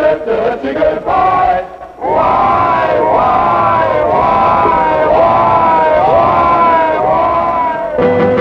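A male college glee group sings a tune together in unison. It breaks off briefly about two seconds in, then goes on louder as a dense mass of voices in sliding, falling pitches.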